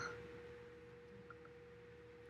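Faint steady hum at a single pitch over quiet room tone, a constant background tone that does not change.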